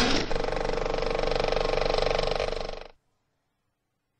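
Logo sound effect of rapid mechanical clicking and whirring, like rotating tiles or a ratchet spinning. It starts abruptly, runs steady with a fast rattle, and dies away at about three seconds.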